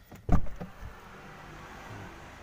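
A car door of a 2019 Daihatsu Terios being shut once: a single heavy thump about a third of a second in, heard from inside the cabin. Shutting the door silences the door-open warning buzzer.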